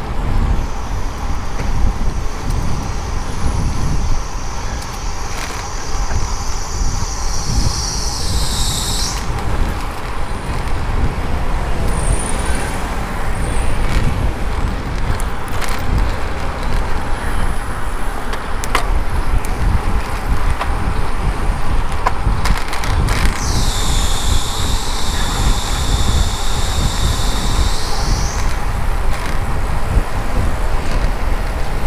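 Wind buffeting the microphone of a helmet-mounted camera on a road bike riding into a headwind, with street traffic around it. A high-pitched whine sounds twice for several seconds, once in the first third and again in the last third; the first drops in pitch just before it stops.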